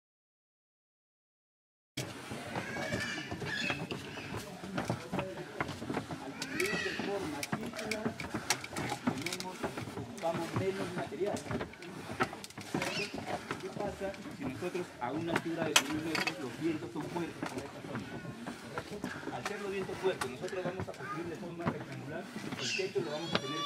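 Dead silence for about two seconds, then indistinct voices of several people talking in the background, with scattered clicks and handling knocks.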